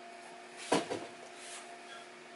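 A brief scrape of leather and lace being handled, about two-thirds of a second in, with a fainter one later, over a steady faint electrical hum.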